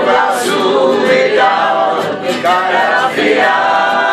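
Men and women singing a song together in chorus, accompanied by acoustic guitars.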